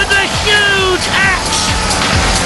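Background music with voices shouting over a steady arena din.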